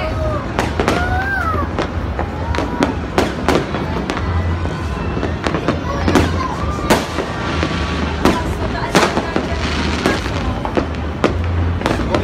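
Fireworks exploding in many sharp bangs at irregular intervals, growing denser from about eight to ten seconds in.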